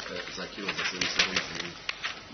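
A person's voice talking quietly, with a quick cluster of sharp clicks about halfway through and one more click near the end.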